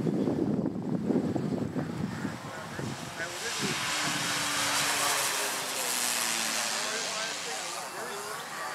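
Engine and propeller of a 70-inch Slick radio-controlled aerobatic model airplane flying overhead. A lower rumble in the first couple of seconds gives way to a hissing rush that swells about halfway through, with a falling tone, and eases off near the end.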